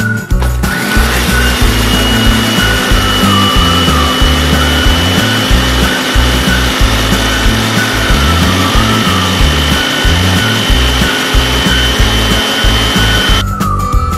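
Electric mini food chopper grinding Oreo cookies into fine crumbs: the motor and blade run with a steady high whine, starting just after the start and cutting off shortly before the end. Background music plays underneath.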